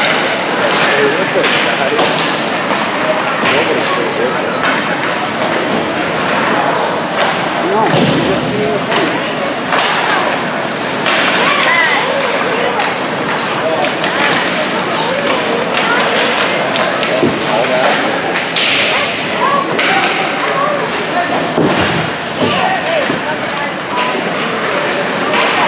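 Ice hockey play in an indoor rink: repeated knocks and thuds of puck, sticks and players against the boards, over a continuous wash of skates and crowd noise.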